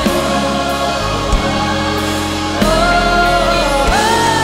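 Live gospel-style worship song: a choir singing with band and string accompaniment, the voices holding a long note from about two and a half seconds in.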